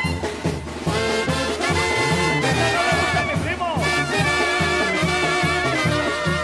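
Instrumental break in a ranchera song played by a Mexican brass band: horns carry a melody over a steady, bouncing bass line.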